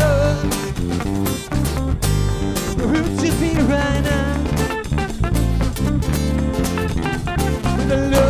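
Live band playing an instrumental funk-rock groove: electric bass line and guitar over a steady drum beat, with a wavering melodic lead phrase about halfway through.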